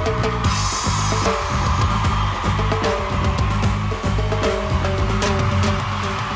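Band music between sung lines: a steady drum-kit beat over heavy bass, with a band of hiss and a brief burst of cymbal-like hiss about half a second in.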